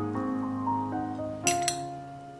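Two quick clinks of a metal spoon against a ceramic plate, about a second and a half in, over soft background piano music.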